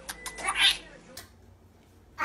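Kisses on a baby's cheek: a few quick lip smacks, then a short high squeak that rises in pitch about half a second in.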